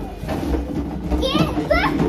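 A young child's high-pitched voice: two short, wavering squeals in the second half, over adults' background conversation.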